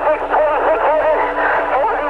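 Police two-way radio transmission: a wounded officer's voice, thin and band-limited, calling in his location and reporting that he has been shot, with a steady tone beneath.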